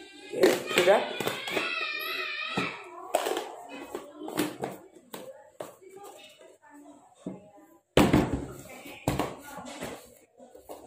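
Handling of a plastic vacuum flask: scattered knocks and clicks as it is picked up and its lid is worked, with one sharp, loud knock about eight seconds in. A voice is heard briefly near the start.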